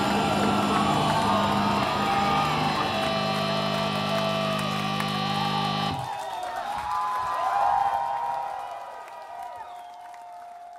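Live rock band playing loud, ending on a held chord that cuts off sharply about six seconds in. The crowd then cheers and whoops, fading toward the end.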